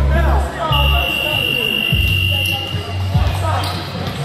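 Gym scoreboard buzzer sounding one steady high tone for nearly two seconds, marking the end of the first half.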